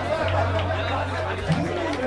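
Audience chatter over a held low note from the double bass and acoustic guitar as a song ends; the low note stops about one and a half seconds in.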